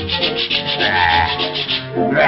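Cartoon sound effect of brushes scrubbing in a fast, even rhythm, about ten strokes a second, over the musical score. A short wavering squeak comes about a second in.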